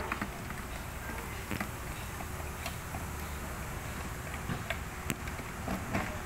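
A few faint clicks and taps of hard plastic as a PVC cross fitting is handled and seated into a plastic planter base, over a steady low background rumble.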